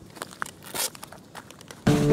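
Scattered light rustling and handling clicks, with a short scuffing burst a little before the middle. Near the end, background music starts suddenly and is much louder.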